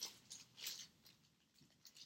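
Faint rustling of small items being picked up and handled, a couple of brief rustles in the first second, then near silence.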